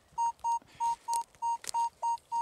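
Nokta Makro Legend metal detector beeping over a buried target as the coil passes back and forth: about three short, even beeps a second at one mid pitch, each cutting off sharply. That clean stop is what the detectorist reads as the sign of a coin or button rather than junk.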